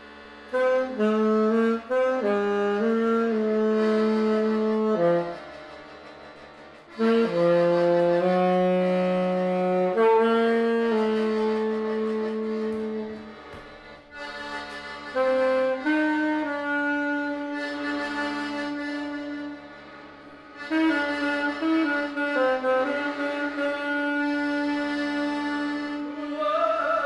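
Music: a slow melody on a wind instrument, played as held notes in phrases with short pauses between them.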